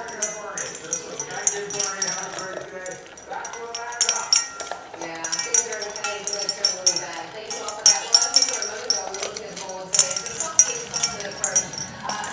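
Two dogs eating fast from stainless steel bowls on a tile floor: many quick metallic clinks and clicks as muzzles, tags and food knock against the bowls.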